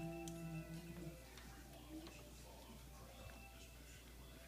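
A voice holding a sung note, the tail of a hummed "do, do, do" tune, which stops about a second in. After it, quiet room tone with a few faint ticks.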